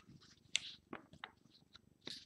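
Glossy magazine pages rustling and crackling as they are bent and flipped by hand, in a few short, faint bursts, the loudest about half a second in.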